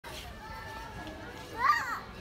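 Children's voices murmuring in the background, then a short, loud, high-pitched child's exclamation near the end.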